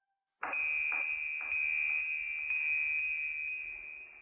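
A steady high electronic tone that starts suddenly about half a second in, with fainter strokes about twice a second beneath it at first, and fades near the end: an outro sound effect over the closing card.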